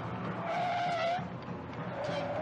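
Tires of a 1968 Chevrolet Chevelle squealing as the car skids: a wavering screech of under a second, then a lower squeal starting near the end, over a low steady rumble.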